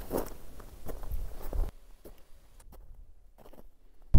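Footsteps of hiking boots crunching in snow, a handful of steps over the first second and a half, then fading out.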